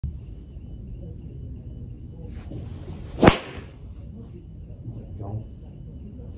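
Callaway Rogue ST Max driver swung with a swish and striking a teed golf ball with one sharp crack a little over three seconds in. It is a well-struck drive that goes "massive".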